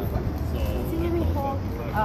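Background chatter of people's voices over a steady low rumble.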